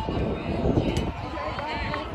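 Indistinct voices of people talking in the background, with a brief rushing noise in the first second.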